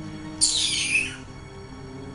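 Film soundtrack music with a held drone, and a short, high, falling swish about half a second in.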